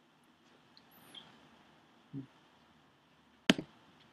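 Quiet room tone broken by a soft low knock about two seconds in, then a sharp, loud click with a smaller one right after it about three and a half seconds in: clicks and knocks from a laptop being worked by hand without a mouse.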